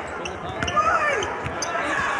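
Basketball bouncing on a hardwood court with sneakers squeaking as players scramble for a rebound, over arena crowd noise.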